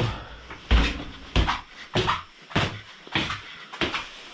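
Footsteps going down a flight of indoor stairs: about six evenly spaced steps, a little under two a second.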